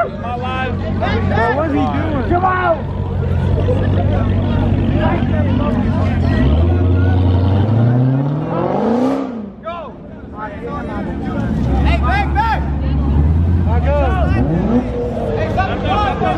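Dodge Challenger's engine running low and steady, then revving up in one long rising sweep of about two seconds around the middle before dropping off, with a shorter rise near the end; loud crowd chatter and shouting throughout.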